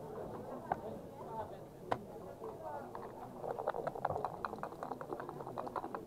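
Backgammon checkers being moved and set down on the board with sharp clicks, then a quick run of rattling clicks about three and a half seconds in, over a murmur of voices.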